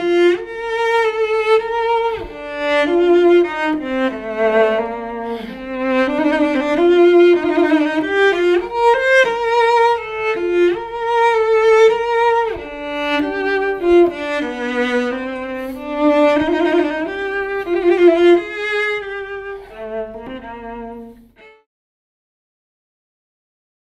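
Solo cello bowed, playing a melodic line of sustained notes with vibrato; this is the Upton Cello, a new cello built by a double-bass maker. The playing fades and the last note dies away near the end.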